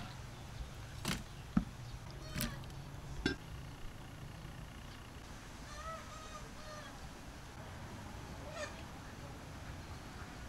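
A few sharp knocks of a knife and fish pieces on a wooden chopping block in the first few seconds, then a short call from a fowl about six seconds in, over a steady low background.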